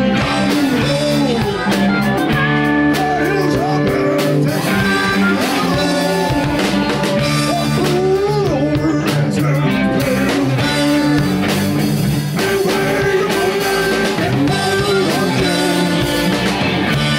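Live electric blues band playing: drums, bass guitar and guitars, with a male lead singer at the microphone.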